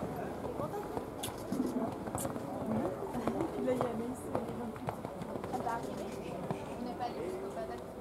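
Indistinct chatter of people talking near the microphone, with the faint hoofbeats of a horse cantering on a sand arena under it.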